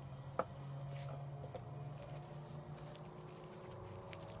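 A single sharp clack about half a second in as a pistol is set down on a wooden chair, then faint footsteps over a low steady hum.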